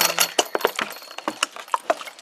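Plastic water bottle being handled and tipped to water a worm bin, giving a string of irregular sharp clicks and crackles.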